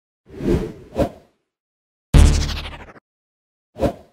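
Intro sound effects for an animated logo: a whoosh swelling into a sharp hit about a second in, then a loud, heavy impact about two seconds in that fades over most of a second, and a short swoosh near the end.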